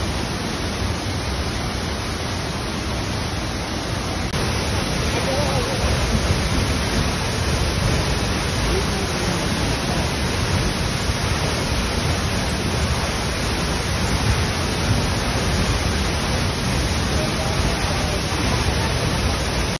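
Steady, loud rush of a 42-metre waterfall pouring down a rock face into its plunge pool, growing louder a little after four seconds in.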